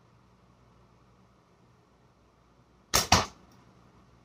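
A slingshot shot about three seconds in: the .8 flat bands snap as an 11 mm steel ball is released, and a second sharp crack follows about a quarter second later. The shot missed the spinner target, and the ball sounded like it went through the catch box.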